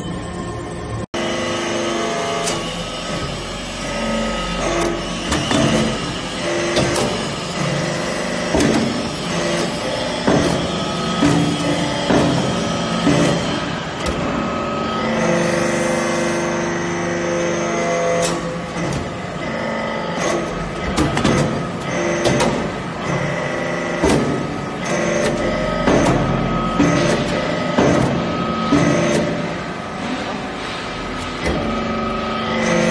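Vertical hydraulic briquetting press running: the hydraulic power unit hums with several steady tones while the ram cycles, compacting metal chips into briquettes. Repeated knocks and clanks come from the press throughout.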